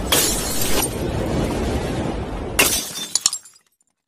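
Glass-shatter sound effects over a low rumbling bed: one hit lasting under a second at the start, and a second about two and a half seconds in that breaks into scattered tinkling fragments. The sound then dies away to silence shortly before the end.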